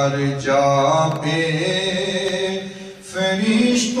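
A man singing a devotional chant unaccompanied, in long held notes that slide between pitches. It breaks off briefly about three seconds in, then resumes on a higher note.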